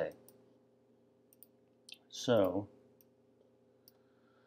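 A few faint, short computer mouse clicks spread over the first two seconds, over a low steady hum.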